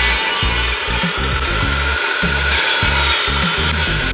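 Table saw blade cutting through a wooden board, a steady dense rasp with a whine running under it, ending abruptly.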